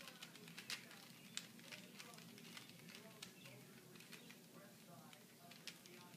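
Faint, irregular clicking of a plastic Rubik's Cube's layers being turned by hand, with a few sharper clicks about a second in.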